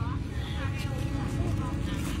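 Faint voices talking in the background over a steady low rumble.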